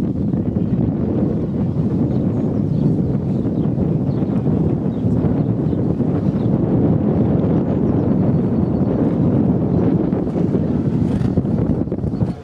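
Wind buffeting the camera's microphone: a loud, steady rumble that cuts off sharply at the end.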